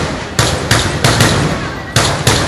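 Mascoli, small black-powder mortars, going off in a rapid string: about five sharp, loud blasts in two seconds at uneven spacing, each trailing off briefly.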